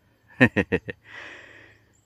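A person laughing: four quick short laughs, each a little lower than the last, followed by a breathy exhale.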